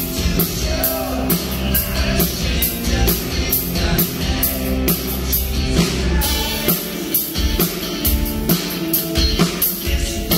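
Live rock band playing: electric guitar, bass guitar and a drum kit keeping a steady beat, with a male lead singer.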